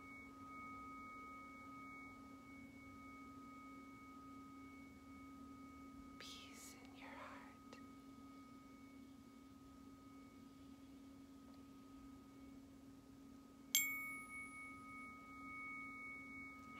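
Tuning forks ringing softly with several steady, long-held pure tones, one low and two higher. Near the end a fork is struck with a sharp tap and starts a fresh, brighter ring.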